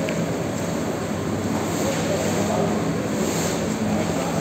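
Steady low hum and background noise with faint, indistinct voices.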